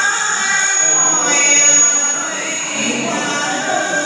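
A woman singing a Vietnamese folk love song (hát giao duyên) through a microphone and PA in a hall, in long held, wavering notes without accompaniment.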